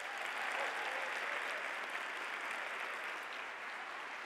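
Audience applauding steadily: a dense, even clapping from a large theatre crowd at the close of a talk.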